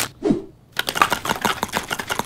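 A rapid series of sharp clicks, about ten a second, starting under a second in.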